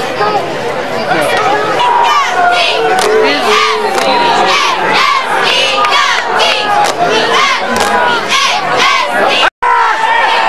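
Crowd of spectators shouting and cheering, many voices overlapping. The sound drops out for a split second near the end.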